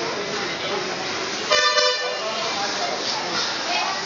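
A vehicle horn honks briefly about one and a half seconds in, over a steady background murmur of people talking.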